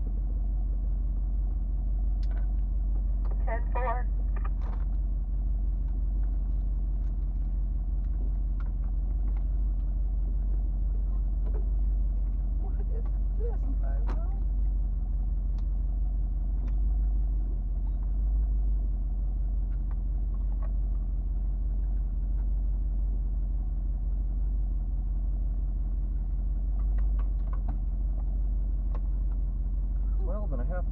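1977 Jeep Cherokee's engine idling steadily with a deep, even rumble while the vehicle stands still, heard from inside the cab.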